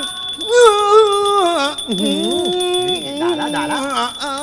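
A singer draws out one long likay-style (Thai folk-opera) sung phrase in wavering, sliding held notes, over a Thai ensemble accompaniment with small ching cymbals ringing.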